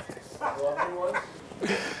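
Men laughing: a soft, wavering giggle about half a second in that trails off after a second or so.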